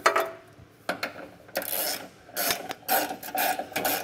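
Ratchet wrench clicking in several short, uneven bursts as a flange nut is run down onto a trailer hitch carriage bolt.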